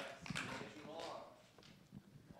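Faint murmur of voices with scattered small knocks and paper rustles, as the band members handle their instruments and sheet music once the playing has stopped.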